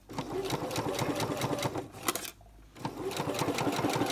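Electric domestic sewing machine running a straight stitch along the edge of layered cotton fabric, with a rapid, even clatter of needle strokes. It stops for under a second a little after halfway, then starts sewing again.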